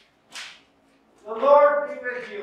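A brief hiss about half a second in, then a man's voice beginning the liturgy about a second and a half in, loud and clear.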